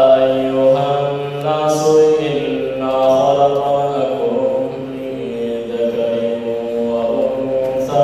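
A man's voice chanting unaccompanied in long, held notes that slide slowly from pitch to pitch.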